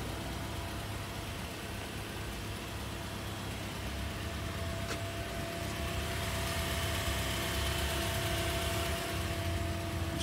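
A car engine idling steadily, a constant hum over a low rumble that grows a little louder about six seconds in.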